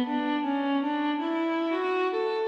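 Sampled orchestral bowed strings from the Philharmonik 2 software instrument, played from a MIDI keyboard: a slow legato line of sustained notes, each held about half a second before moving to the next.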